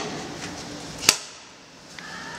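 J1772 charging connector pushed into the truck's front charge port, latching home with one sharp click about a second in, after a couple of fainter knocks as it is lined up.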